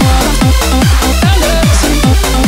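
Instrumental section of a donk (UK bounce) dance remix: a fast four-to-the-floor beat with a deep falling bass note about four times a second, ticking hi-hats and held synth chords, with no vocals.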